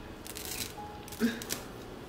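Faint rustling and light clicks of fingers handling a curly wig's hair at the ear, with a brief low hum of the voice about a second and a quarter in.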